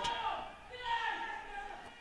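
A brief pause in the commentary: faint field ambience with a faint voice calling about a second in.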